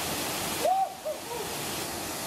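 Steady rush of a waterfall pouring into a rock pool. About two-thirds of a second in, the rushing briefly drops away and a short vocal cry is heard, with two fainter ones just after.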